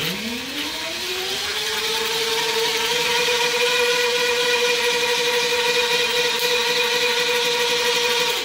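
Electric bike hub motor spinning up at full throttle with its wheel spinning in place on a concrete floor: a whine that rises in pitch over about two seconds, then holds steady. The tyre spins hard enough against the floor to scuff off rubber and smoke.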